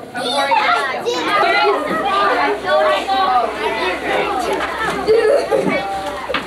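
Many children talking over one another in a classroom: a steady, loud chatter of overlapping voices with no single speaker standing out.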